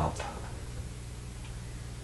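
Room tone: a steady low hum over faint background noise, with the end of a softly spoken word at the very start.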